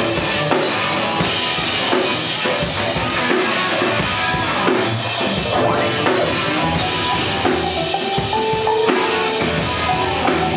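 Live electro-fuzz rock band playing loud: a driving drum kit with bass drum, fuzzy electric guitar and synth keyboards.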